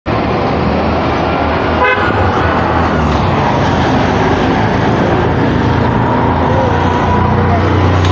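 Busy road traffic with engines running and vehicle horns sounding, including a short horn toot about two seconds in.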